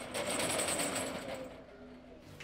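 Corrugated metal roll-up shutter being pulled down, its slats rattling quickly as it runs down, the rattle dying away about a second and a half in.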